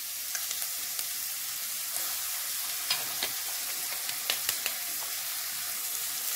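Chopped red onions and crushed garlic sizzling in hot vegetable oil in a stainless steel pot as they are stirred with a spatula: a steady hiss broken by a scattering of sharp crackles.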